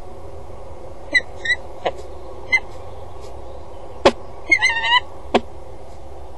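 Peregrine falcon giving short, sharp calls, a few single ones and then a quicker run of them about four and a half seconds in, with three sharp knocks in between, over steady background noise.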